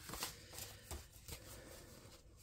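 Faint rustling and soft flicks of paper banknotes being thumbed through and counted by hand.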